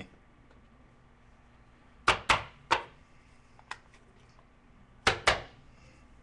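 Sharp taps and clicks from handling trading card packs and a box on a table: three quick taps about two seconds in, a lighter click near four seconds, and a pair of taps about five seconds in, against a quiet room.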